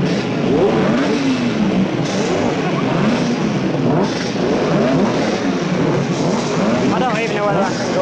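Several racing motorcycle engines being revved, their pitch rising and falling over and over in quick blips that overlap.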